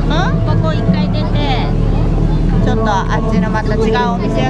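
Children and adults talking close by, with high-pitched child voices, over a steady low hum.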